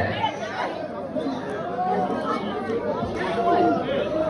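Crowd chatter: many voices talking at once in a large audience.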